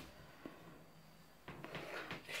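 Near silence: quiet room tone with a faint click about half a second in and a few soft handling knocks near the end.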